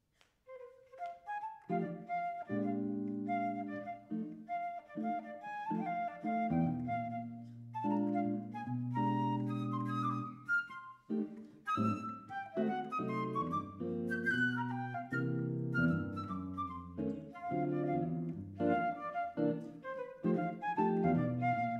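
Flute and hollow-body electric guitar playing a duet. The flute melody enters about half a second in, and the guitar's sustained chords join about a second later.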